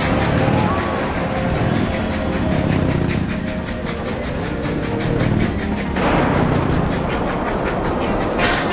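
Rock music with a steady, driving beat. About six seconds in, a loud rush of hissing noise joins it.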